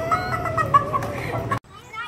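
A person's long, high wailing cry held on one slightly wavering note, which cuts off abruptly about a second and a half in.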